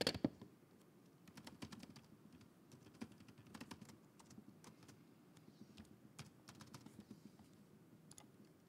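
Faint typing on a computer keyboard, keystrokes coming in short irregular runs.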